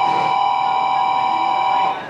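Steady two-tone electronic buzz of a school class-change bell, holding one level and cutting off sharply near the end.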